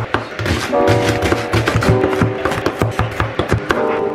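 Background music, with the repeated knocks of a santoku knife chopping leek and then garlic on a wooden cutting board.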